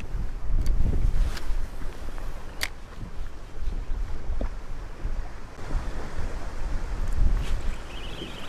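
Wind buffeting the microphone on an open boat: a low rumble that swells and drops, with a few faint clicks.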